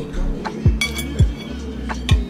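A metal fork clinks against a ceramic plate a little under a second in, with a brief ringing tone, over background music with a steady hip-hop beat.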